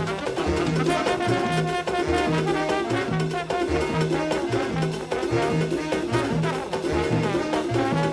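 Afro-Cuban big-band mambo music: brass section playing over a steady, repeating bass line and Latin percussion.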